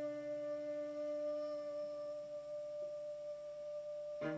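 A sustained musical drone of several steady held tones with no attacks. The lowest tones fade out about two-thirds of the way in, while a higher tone holds on.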